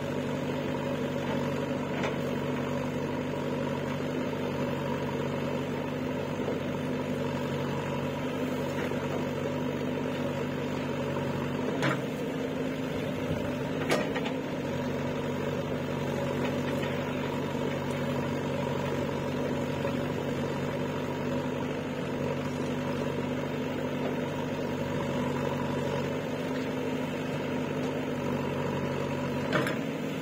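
JCB 3DX backhoe loader's diesel engine running steadily at an even speed, with two brief knocks near the middle.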